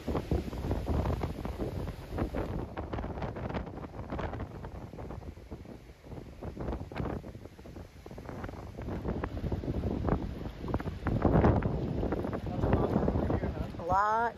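Gusty tropical-storm wind buffeting the microphone, rising and falling in gusts, with a lull near the middle and stronger gusts late on, over storm surf breaking on a rocky shore.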